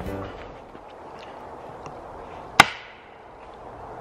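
A single sharp crack about two and a half seconds in, loud and sudden, with a short echo ringing after it. It is an unidentified sound that the hikers cannot place because it echoes.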